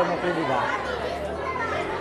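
A man speaking briefly at the start, then the murmur of several people talking at once around him.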